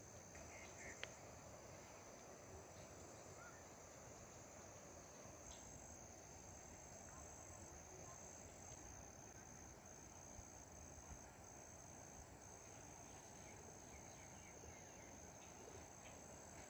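Faint, steady high-pitched drone of insects in vegetation, with one soft click about a second in.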